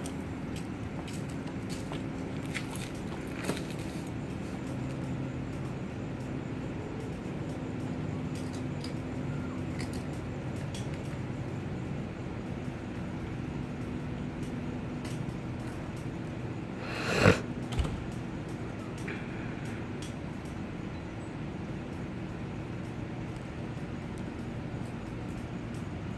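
A steady low hum over faint outdoor background noise, with a few faint ticks and one sharp knock about two-thirds of the way through.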